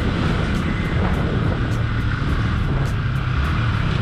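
Yamaha R15 V3's 155 cc single-cylinder engine running steadily at low street speed, with a steady low rumble under an even haze of wind and road noise on the camera's built-in microphone.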